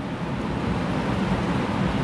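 Steady rushing background noise with no tone or rhythm, running evenly in a pause between a man's sentences.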